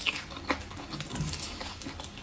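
Close-miked mouth eating braised pork: chewing and lip-smacking with sharp wet clicks, the strongest right at the start and about half a second in.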